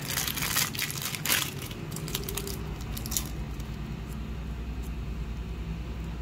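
A small clear plastic zip bag of servo arms and screws being handled and opened, crinkling loudest in the first second and a half, then rustling more softly.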